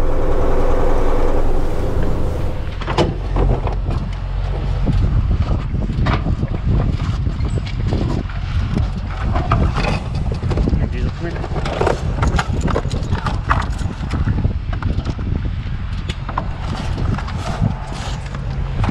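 Irregular clanks and knocks of a folding metal step being set out at a truck's passenger door, over a steady low rumble.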